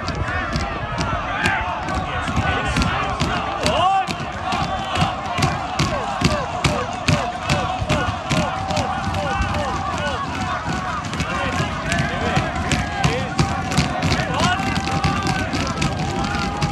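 Football crowd shouting and chanting, with sharp rhythmic hand claps about two a second running under the voices.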